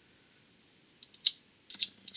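Small stainless steel wire brush scratching across the pins of a miniature vacuum tube in a few short, quick strokes, starting about a second in, scrubbing dull tarnished brass pins clean.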